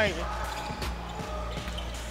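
Game sound from a basketball court: a ball bouncing on the hardwood floor over a steady low hum.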